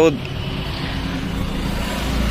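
Steady noise of road traffic going by, with a faint steady hum under it.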